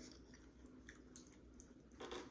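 Faint chewing with the mouth closed: a mouthful of taco bowl with a baked-cheese shell, with a few soft clicks and squishes.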